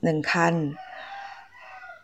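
A faint, drawn-out call in the background with a slowly falling pitch, lasting about a second and starting just under a second in.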